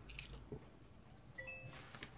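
Faint light clicks and scrapes of a small screwdriver and metal screws and bracket being handled on a water-cooler pump block. About one and a half seconds in there is a brief thin high tone, followed by a short scrape.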